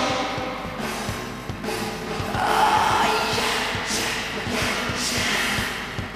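Live rock band playing a song: a steady drum beat under electric guitar, with vocals from the singer.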